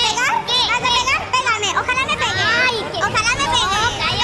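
Several high-pitched voices shouting over one another in a heated argument.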